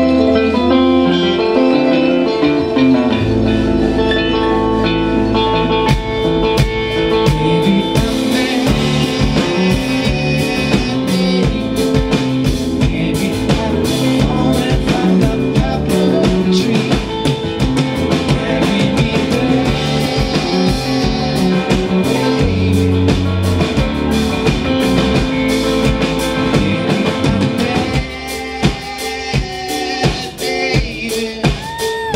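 Live folk-rock band playing an instrumental passage on acoustic guitar, concert harp, bass guitar and drum kit. The drums come in strongly about six seconds in, and the music thins out near the end.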